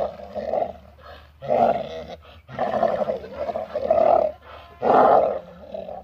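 Donkey braying: a long run of loud, rhythmic hee-haws, with a short break about two and a half seconds in.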